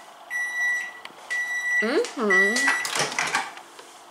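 Microwave oven beeping three times, a steady high beep of about half a second repeated roughly once a second: the signal that its heating cycle has finished.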